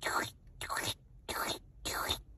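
A person's mouth imitation of Broly's walking sound: a steady rhythm of breathy, hissing bursts, about one every 0.6 s.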